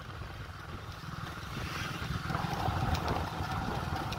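Wind buffeting a handheld phone's microphone outdoors: an uneven low rumble that grows a little louder about halfway through.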